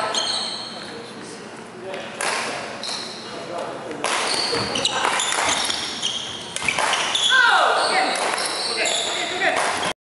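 Badminton rally on a wooden gym floor: sneakers squeaking in short high-pitched chirps as the players move, with racket strikes on the shuttlecock, all echoing in a large hall.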